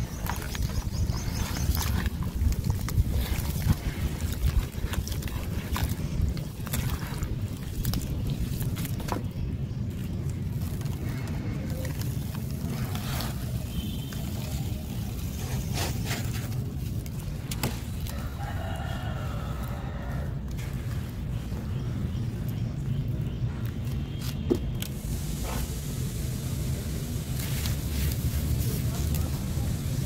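Gritty sand-cement mix being crumbled and poured into a bucket of water, with scattered crumbles, knocks and splashes over a steady low wind rumble on the microphone. A rooster crows once, about two-thirds of the way through.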